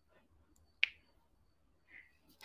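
One short, sharp click, like a snap, a little under a second in, otherwise near silence.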